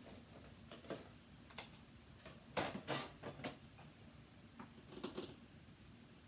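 Rummaging through stamp sets on a storage shelf: scattered faint clicks and rustles as cases are handled, loudest about two and a half seconds in and again about five seconds in.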